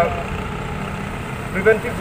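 Steady low rumble of a motor-vehicle engine running nearby, heard in a gap in a man's amplified speech; the speech resumes near the end.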